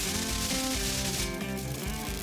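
Background music under a hissing, scraping cutting sound as gloved claws slice through a cardboard wall. The hiss stops after about a second and a quarter, and the music carries on.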